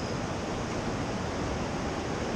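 Steady rush of river water, with whitewater rapids ahead.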